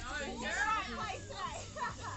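High-pitched voices, like children calling and chattering, over faint background music.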